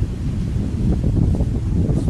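Wind buffeting the camera's microphone outdoors: a loud, uneven low rumble that rises and falls in gusts.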